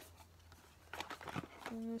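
A few soft clicks and rustles from a small cardboard box being handled, followed near the end by a woman starting to speak.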